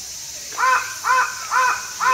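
A crow cawing four times in a row, about two caws a second, beginning about half a second in.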